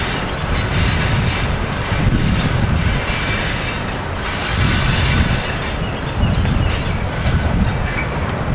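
Wind buffeting the camera's microphone, a rumble that rises and falls in gusts.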